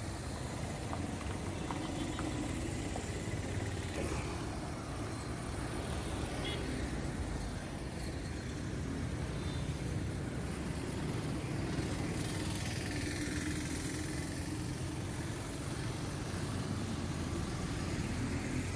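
Road traffic going by: cars and motorcycles giving a steady, even hum of engines and tyres.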